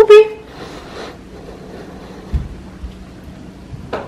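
A woman calls out a name once, loud and short, at the very start. After it come quiet room noise, a faint steady hum from about two seconds in, and a soft low thump.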